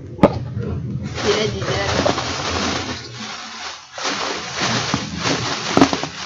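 Inflated plastic air-pillow packing crinkling and rustling as it is pulled out of a cardboard shipping box, with a sharp click just after the start and another near the end.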